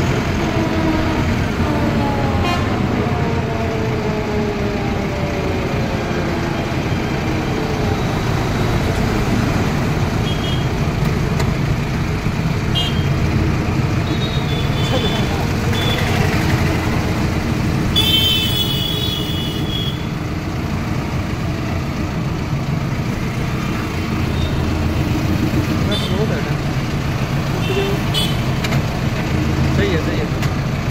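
Mahindra Novo 655 DI tractor's diesel engine, heard from the driver's seat. Its note falls over the first several seconds as the revs drop, and it then runs steadily at low revs. A vehicle horn sounds briefly a little past halfway, with a few shorter horn beeps from the traffic around it.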